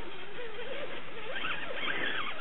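Axial AX10 Scorpion RC rock crawler's electric motor and gears whining as it crawls over rocks, the pitch wavering up and down, with higher whining in the second half.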